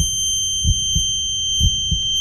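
Heartbeat sound effect, a slow double thump about once a second, under a steady high-pitched ringing tone: the dazed, knocked-out effect.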